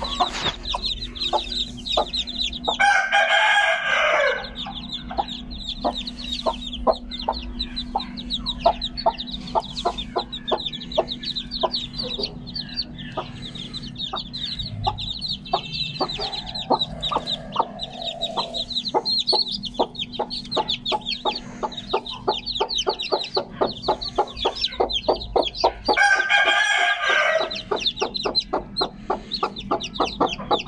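A brood of chicks peeping rapidly and without pause around their mother hen. Twice a longer, louder call cuts through, a rooster crowing: once about three seconds in and once near the end.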